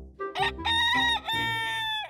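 A rooster crowing: one cock-a-doodle-doo that starts about a third of a second in, breaks briefly in the middle and ends on a long held note, over background music.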